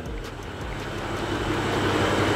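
BMW M2's turbocharged straight-six idling steadily, a low hum that grows a little louder over the two seconds.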